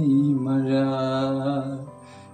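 A man sings a Malayalam poem in a chanting style, holding one long steady note that fades out near the end.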